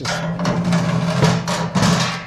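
Oiled expanded-metal cooking grate of a Char-Griller Grand Champ XD offset smoker sliding along its steel rails: continuous metal scraping and rattling over a steady ringing hum, loudest near the end. The seasoning coating on the rails lets it slide easily, nice and smooth.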